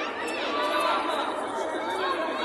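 Many overlapping voices of spectators calling out and chattering in a large sports hall during a judo bout.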